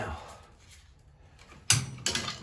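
A single sharp click near the end, with a smaller knock just after: the hard plastic electronic control unit on a gas boiler being handled and pulled loose during its removal.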